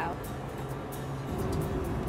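Background music with a beat over a steady low rumble of the Boeing 777 simulator's engine sound at takeoff power, growing slightly louder a little past the middle.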